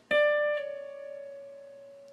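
A single electric guitar note picked on the B string at the 15th fret, then pulled off to the 14th fret about half a second in, stepping down a semitone and ringing out as it fades.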